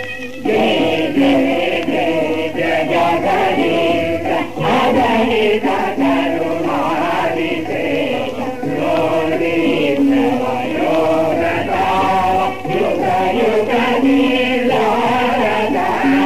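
Voices singing together in a chant-like style over a steady low drone, as the opening music of a Telugu stage-drama recording.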